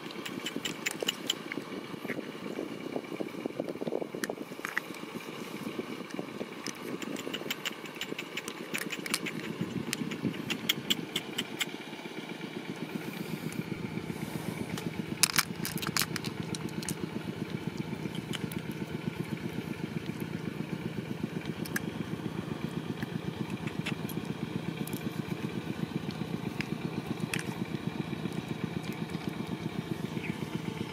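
A steady low motor-like rumble with a fast even pulse that gets deeper and fuller about halfway through, under scattered light clicks and taps as a mussel shell and beads are handled, with a couple of sharper clicks just after the middle.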